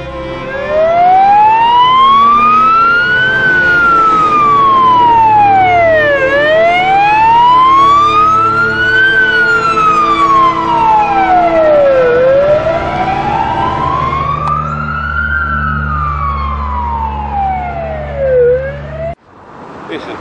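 Police car siren in a slow wail, rising and falling three times, about six seconds to each cycle, then cut off suddenly near the end.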